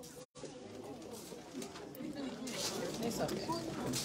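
Many indistinct voices of guests talking over one another, growing louder in the second half, with a brief gap in the sound just after the start.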